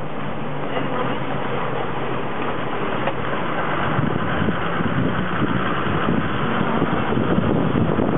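A steady engine drone with a constant rushing noise, as from a moving vehicle.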